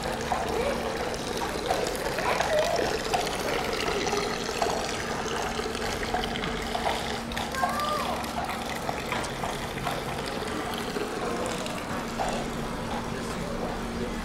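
Spa spring water trickling steadily from a snake-shaped drinking spout into a metal basin, with passers-by talking.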